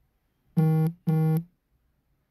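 Two short, identical electronic buzzes at one steady low pitch, each about a third of a second long and half a second apart.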